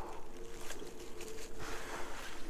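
Rustling of dry grass and fallen leaves as a hand reaches in to pick a mushroom, over a faint steady hum.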